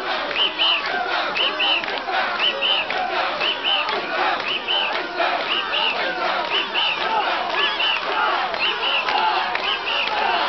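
Crowd of mikoshi bearers chanting and shouting together in rhythm as they carry a portable shrine, with a sharp high double note repeating about once a second to keep time.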